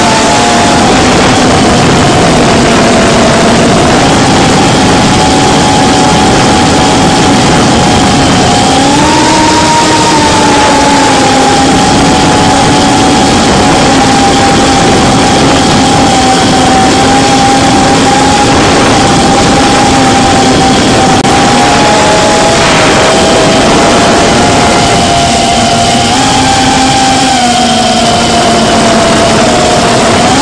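GEPRC Cinequeen cinewhoop FPV quadcopter's brushless motors and ducted propellers, recorded from the camera on board: a loud, steady buzzing whine over a hiss of rushing air. Its pitch rises and falls a little with the throttle, stepping up about nine seconds in.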